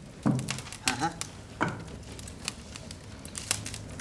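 A man's short soft vocal bursts, like a chuckle, three times in the first two seconds, over faint scattered crackles and clicks.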